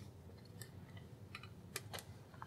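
A few faint, sharp clicks and small knocks, about four spread over two seconds, from handling as the camera is raised.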